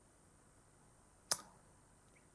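Near silence broken by a single short, sharp click a little over a second in.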